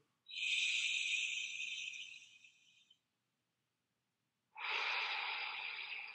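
A man taking a slow, deep breath in through the nose for about two and a half seconds, a pause, then a long breath out starting about four and a half seconds in, as part of a paced deep-breathing drill.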